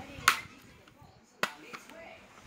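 Two sharp plastic clacks about a second apart, the first louder, as plastic CD cases are handled and knocked together.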